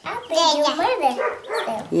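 Voices talking without clear words, rising and falling in pitch.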